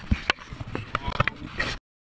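A quick run of clicks, knocks and bumps with a heavy thump just after the start: handling noise from a handheld camera being moved about. The sound cuts off abruptly near the end.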